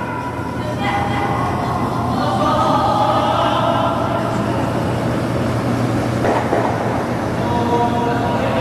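Rumble of granite curling stones sliding on the ice, swelling a couple of seconds in, with a sharp knock a little after six seconds in and faint players' calls in the background.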